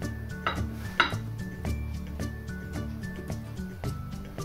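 Background music plays throughout. About half a second and a second in, a knife cutting through a cake sounds twice against the plate, the second time louder.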